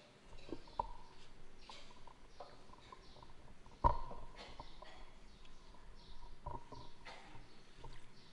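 Handling noise close to a desk microphone: scattered soft clicks and rustling, with one sharp knock about four seconds in that rings briefly.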